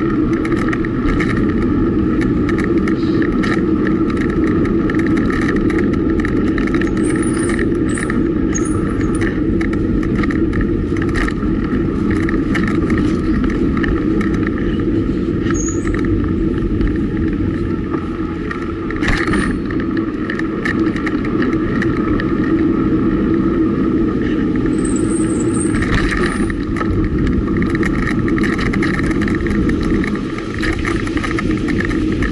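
Steady wind and road noise from a road bike being ridden, picked up by a camera mounted on the bike, with many small clicks and rattles as it runs over the pavement.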